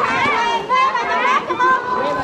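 A crowd of children playing, their high voices shouting and chattering over one another without a break.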